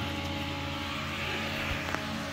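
Steady hum and whoosh of a workshop pedestal fan running, with a faint click near the end.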